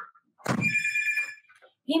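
A brief bell-like ring: a sudden start about half a second in, then several steady high pitches held for about a second before stopping.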